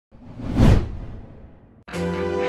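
An editing whoosh sound effect that swells quickly to a peak under a second in and then fades away. Music starts just before the end.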